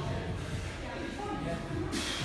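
Faint background music and distant voices in a large gym hall, with a short click near the end.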